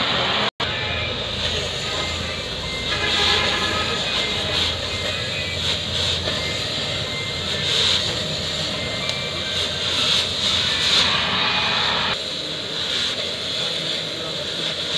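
Oxy-fuel gas cutting torch running steadily as it cuts through a steel gear, a continuous hissing roar of the flame and cutting jet.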